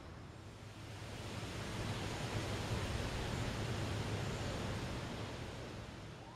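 Outdoor background noise: a steady rushing hiss that swells after about a second and fades near the end, over a low steady hum.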